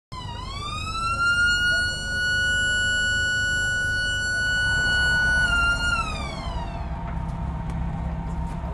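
Electric alarm siren sounded from a ship's wheelhouse: one long wail that winds up in pitch within the first second, holds steady for about five seconds, then winds down and dies away about seven seconds in, raising the alarm for a man-overboard drill. A low rumble runs underneath.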